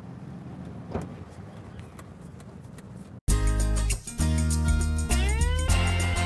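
An Evinrude 135 H.O. outboard motor idling with a low, steady hum. About three seconds in, this cuts off abruptly and loud theme music begins, with rising sweeps and electric guitar.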